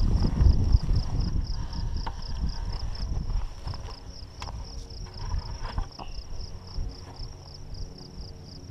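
An insect chirping steadily, a high pulse repeating several times a second. Low rumbling and handling noise come near the start, and a few light knocks follow as a plastic bucket is tipped over on dry grass.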